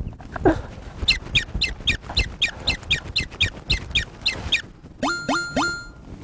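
Added comic sound effects: a quick run of about a dozen short, high chirps, nearly four a second, then three short rising tones that count one-two-three.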